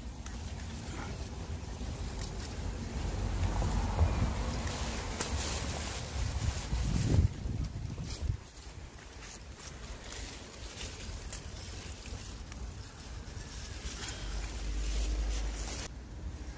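Wind blowing on the microphone: a low rumbling hiss that swells and eases, with a few brief rustles.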